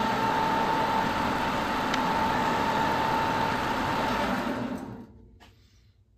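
Precision Matthews PM 1228 benchtop metal lathe running while facing an aluminium bar under power feed: a steady mechanical hum with a whine and a hiss. The spindle stops about five seconds in and the sound dies away quickly.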